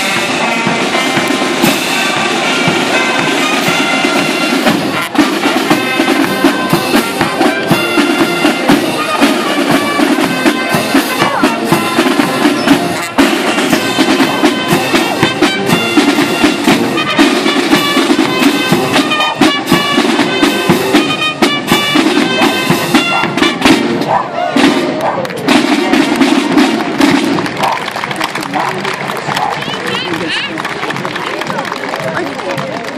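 Military marching band playing a march: brass instruments carry the tune over rapid side-drum beats. Near the end the tune stops and the drums carry on.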